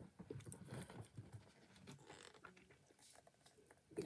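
Near silence, with faint small crackles and rubbing from hands flexing a silicone mold to work a stuck resin casting out.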